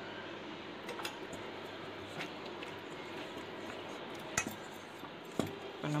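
A metal spoon clinking against a stainless steel bowl a few separate times while dough is mixed, over a steady background hiss.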